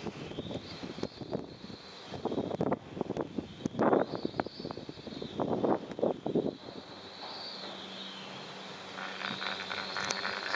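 Four-seat chairlift in motion: bursts of clattering and knocking, three clusters in the middle few seconds, typical of the chair's grip rolling over a tower's sheaves, over a steady mechanical hum and wind noise.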